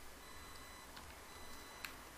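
A few faint computer keyboard keystrokes, the clearest near the end, over a faint low hum.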